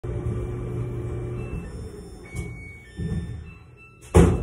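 Samsung clothes dryer finishing its cycle: the drum's steady hum fades away over the first second and a half, with a couple of dull thuds as the drum slows. Short high electronic beeps at different pitches begin, the start of the dryer's end-of-cycle tune.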